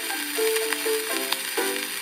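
An early-1900s acoustic disc recording playing a short instrumental phrase of its band accompaniment between sung lines, a melody of stepping held notes. Steady surface hiss and a few faint clicks lie under it.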